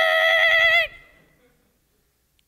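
A man's high, held falsetto "ah" cry, through a handheld microphone on a stage PA, mimicking his wife's shocked, exasperated reaction; it holds one pitch with a slight waver and ends under a second in.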